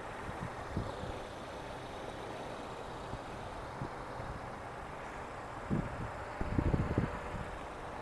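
Steady outdoor background noise with a low rumble, and a few short low thumps about six to seven seconds in.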